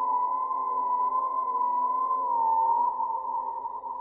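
Eerie electronic background music: one sustained high synthesizer tone that wavers slightly partway through, over fainter steady lower drones, dropping somewhat in level near the end.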